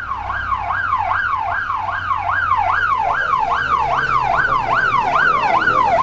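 Police car siren sounding a fast yelp: a quick rise and falling sweep repeating about two and a half times a second, over a steady low rumble.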